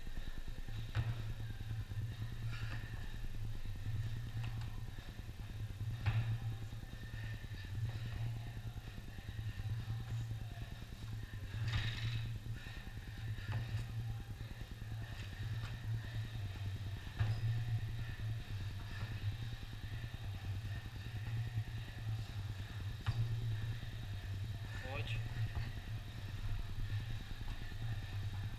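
A steady low hum runs throughout, with a few faint knocks as an athlete works through burpees on rubber gym flooring.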